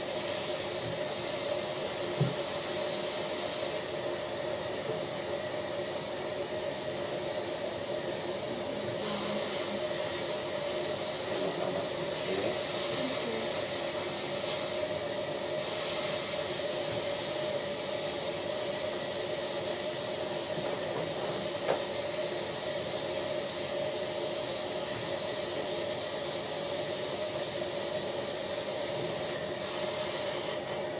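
Dental suction running steadily: a continuous hiss with a low hum under it, and two small clicks, about two seconds in and near twenty-two seconds.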